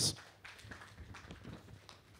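Faint, scattered applause: a few hands clapping irregularly.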